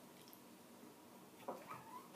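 Near silence broken by a pet guinea pig calling, a couple of brief high calls in the last half second.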